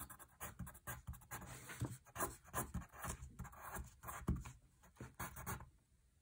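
Staedtler Norica graphite pencil writing on paper: short, irregular scratches and taps of the lead as strokes and note marks are drawn, stopping shortly before the end.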